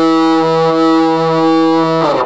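A Kazuki Go Strat electric guitar played through an amp, holding one long sustained note that swells slightly a few times and dies away at the end.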